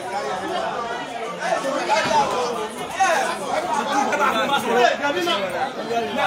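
Several people talking at once, their voices overlapping in continuous chatter.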